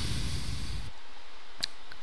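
A short rush of breath on the microphone, then a single sharp click late on.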